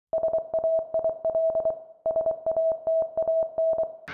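Synthesizer music: a single repeated note pulsing in quick stuttering groups, played as two matching phrases of about two seconds each.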